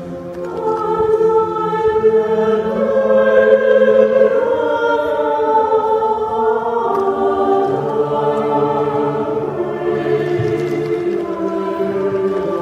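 Chamber choir of men and women singing unaccompanied, holding long chords that shift every second or two, growing louder over the first few seconds.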